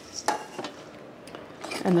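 Small metal canister tin set down on a wooden shelf: a single light clink about a third of a second in.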